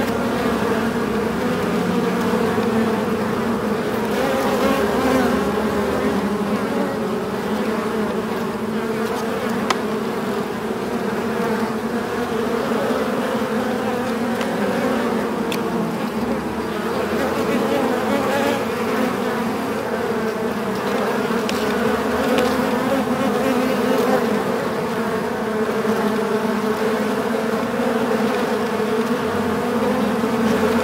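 Bees in a beehive, a steady dense hum of many wings that hardly rises or falls.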